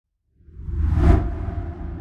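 Whoosh sound effect for a logo reveal: it swells out of silence about half a second in, peaks around a second in over a deep bass rumble, then settles into a low steady drone.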